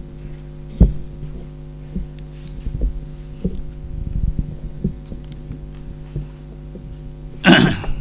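Microphone handling noise: irregular low thumps and knocks as a boom-stand microphone is moved and positioned, over a steady electrical hum from the sound system. Near the end comes a short loud rush of noise close to the microphone.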